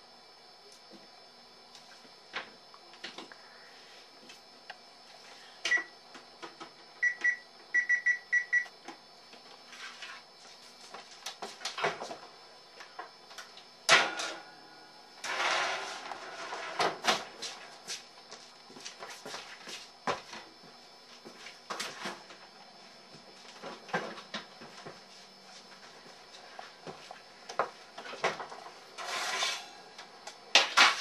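Electric range control panel beeping as its buttons are pressed, one beep and then a quick run of about six, to set the oven temperature. Then clatter and knocks as the oven door is opened and the metal oven rack is handled.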